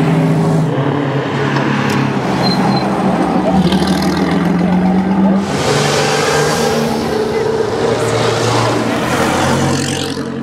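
Vintage open-top cars' engines running at low speed as the cars drive past one after another, with a louder, closer pass in the second half. Crowd chatter underneath.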